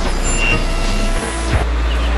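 A loud, steady low rumble with a few thin steady tones above it, starting suddenly just before and running on, like a large engine running.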